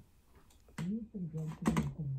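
Muffled voices from neighbourhood street noise played inside a simulated wall, heard through rock wool, a silicone layer and 5/8-inch regular drywall. They start about a second in, dull and without their highs. A couple of sharp clicks come near the end.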